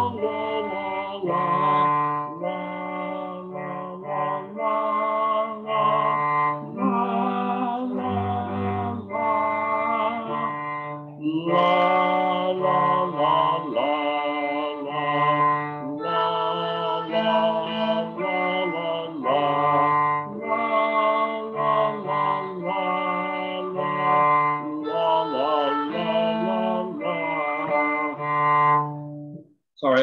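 A man singing a simple beginner cello song, a note-by-note melody over low sustained cello notes, with some of the sung rhythms off by the singer's own account. The music stops abruptly just before the end.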